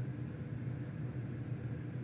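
Steady low hum with a faint hiss: background room tone.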